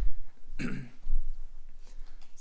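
A man coughing and clearing his throat: a few short, rough coughs in the first second and a half, then quiet.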